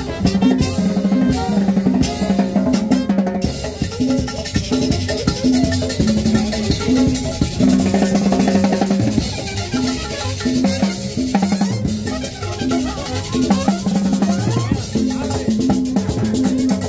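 Amplified live Latin dance band music played by a street band: drum kit and percussion keeping a steady beat over a repeating bass line.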